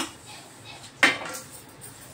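Steel dishes knocking together while being washed by hand at a sink: a light clink at the start, then a louder ringing clank about a second in.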